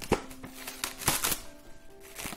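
Plastic cling wrap (Saran wrap) crinkling in a run of sharp crackles as a small piece is pulled off and torn, loudest about a second in. Soft background music plays underneath.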